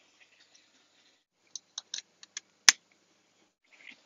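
A few light clicks, then one sharper click a little later, from hands handling a plastic solar charge controller and pressing its buttons.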